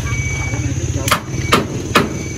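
A nearby engine idles with a low, pulsing rumble that cuts off about a second in. Sharp hammer-like knocks follow at an even pace of about two a second, three of them before the end.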